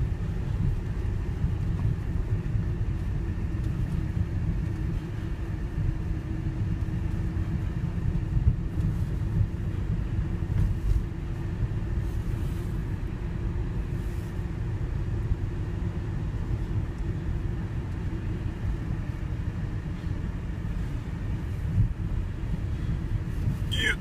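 Opel Vivaro van running, heard from inside the cab: a steady low engine and road rumble with a faint steady hum over it.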